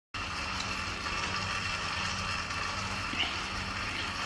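Steady low hum with a hiss behind it, the background noise of a room picked up by a phone microphone, with a faint brief sound about three seconds in.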